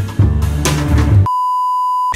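Intro jingle music with a strong bass line cuts off about a second in, and a steady single-pitch test-tone beep of the colour-bars kind takes over.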